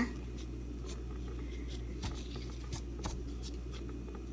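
Faint scratchy rustling and a few light clicks from a gloved hand wrapping strands of shredded kunafa dough around a shrimp on a plastic cutting board, over a steady low hum.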